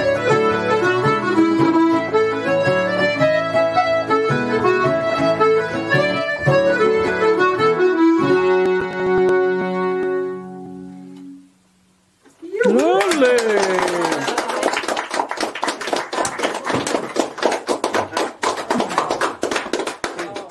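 Traditional Irish session music with accordion and a strummed string accompaniment, finishing on a held chord that fades out about eleven seconds in. After a brief pause, fast rhythmic strumming of the next tune starts.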